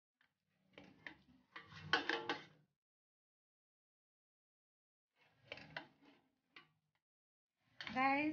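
A cooking utensil scraping and knocking against a stainless steel pot while noodles are tossed and stirred. It comes in a few short bursts, with a quiet stretch in the middle.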